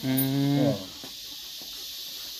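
A man's short, closed-mouth 'mmm' hum of agreement, held steady for under a second and dipping in pitch as it ends.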